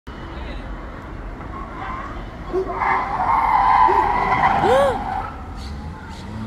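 Car tyres squealing as a car corners hard at the junction, starting about three seconds in and lasting a couple of seconds with a few short chirps, over steady street traffic rumble.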